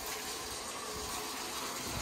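Top-load washing machine filling: a stream of water pours from the dispenser into the drum with a steady, even rush.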